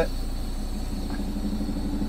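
Diesel engine of a Peterbilt 389 semi-truck running steadily at idle, a low even hum heard from inside the cab.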